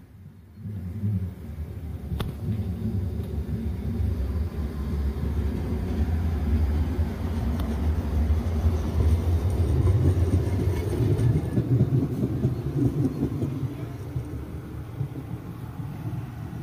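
Electric tram passing close by: a low rumble that builds over the first seconds, is loudest about ten seconds in, then fades as the tram moves off.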